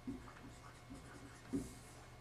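Dry-erase marker writing on a whiteboard: faint, irregular scratching strokes as words are written, one stroke slightly louder about one and a half seconds in.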